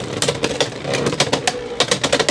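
Two Beyblade X tops, Dranzer Spiral 4-60F and Knight Lance 4-60T, spin on a plastic stadium floor under a clear cover. They make a steady whirring grind broken by repeated sharp clacks.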